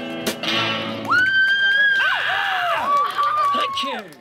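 The band's last chord, with guitar, rings out for the first moment. Then, from about a second in, high-pitched voices call out in long held notes that bend downward.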